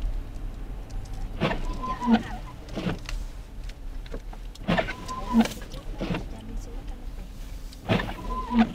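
Car windshield wipers sweeping on a slow intermittent setting, about every three seconds: a knock as the blade starts, a squeaky sweep of rubber across the snowy glass, and a knock as it parks, over the low steady hum of the car.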